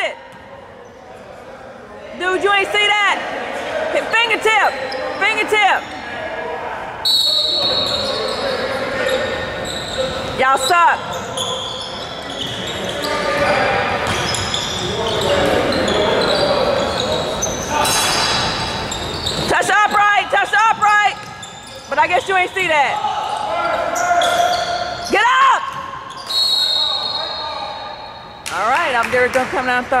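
A basketball being dribbled on a hardwood gym floor, with sneakers squeaking in several short bursts and voices from players and spectators, all echoing in a large gym.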